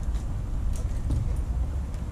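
A low steady rumble with a few faint, short clicks.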